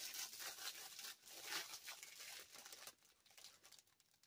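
Clear plastic packaging bag being crinkled and torn open by hand, in irregular rustles that fade out about three seconds in.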